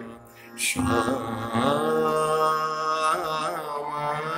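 Male voice singing a slow vilambit khayal phrase in raag Bihag, Hindustani classical style, over a steady drone. A short breath about half a second in, then a long held note with gliding ornaments near the end.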